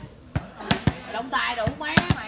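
Several sharp smacks at uneven intervals, with voices talking in the background.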